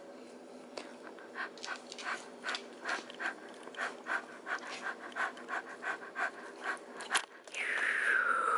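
Small dog (a dachshund) panting quickly in even, breathy strokes, about three a second, while being held for tooth brushing. One sharp click near the end.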